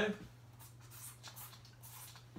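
Marker writing on a whiteboard: a few short, quick strokes as a fraction is written.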